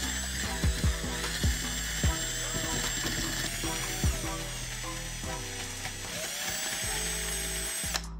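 Cordless drill motor running as the bit bores into a hardened patch of superglue, baking soda and graphite in a wooden board, its whine rising and dipping a few times with the trigger. It stops abruptly at the end.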